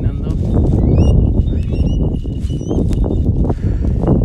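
Wind rumbling on the microphone in open country, with a few short rising chirps from a bird about one, two and three seconds in.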